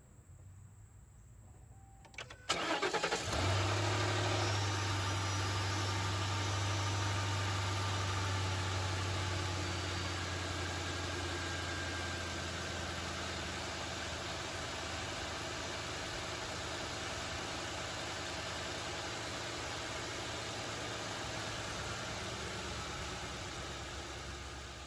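Ford Crown Victoria Police Interceptor 4.6-litre V8 cranking briefly about two seconds in, catching at once and settling into a steady idle, with the newly replaced fuel rail pressure sensor fitted.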